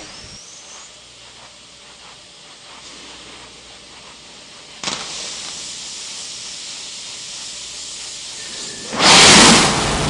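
Space Shuttle on the launch pad in the final seconds of the countdown: a steady hiss grows louder about five seconds in. About nine seconds in comes a sudden loud roar as the main engines ignite.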